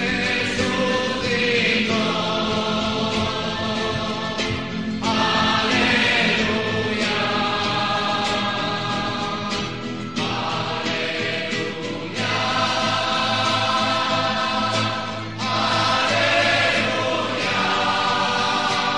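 Choral music: a choir sings long, held chords that change every few seconds, with no spoken words over it.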